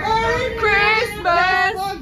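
A woman singing in a high voice, holding three drawn-out, wavering notes.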